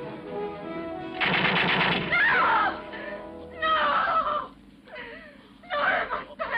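Film score music, broken about a second in by a loud burst of rapid automatic gunfire, with further bursts near the middle and just before the end.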